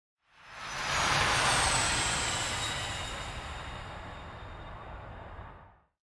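Intro whoosh sound effect: a rush of noise that swells in over about a second, with a low rumble and a faint falling high whine, then slowly dies away and cuts off.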